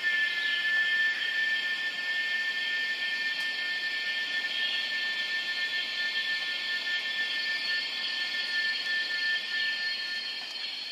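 A sustained high-pitched drone in a music track: several steady tones held together over a hiss, with no beat or change.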